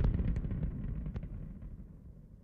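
The low rumbling tail of an outro jingle's closing boom dies away, fading steadily toward silence, with a couple of faint ticks over it.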